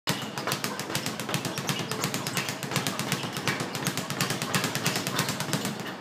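Speed bag being punched in a fast, steady rhythm, the bag rebounding off its round rebound board many times a second in a continuous rattle of sharp strikes.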